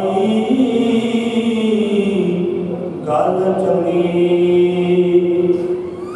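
A man chanting a line of verse into a microphone, in two long, drawn-out phrases with a short break between them.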